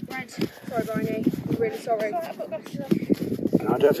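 People talking, their words not made out, over a few light taps.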